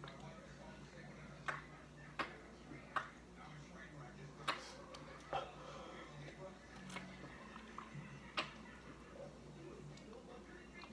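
A person gulping soda straight from a can while chugging it: a series of about seven short, sharp swallows, spaced a second or so apart.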